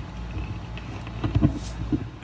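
Mouth, jaw and throat sounds picked up from inside the ear canal by a microphone made from a headphone element: a steady low rumble with a cluster of dull clicks about one and a half seconds in and another just before the end.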